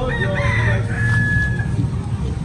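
A rooster crowing once: several rising and falling notes ending in a long held note, over a steady low rumble.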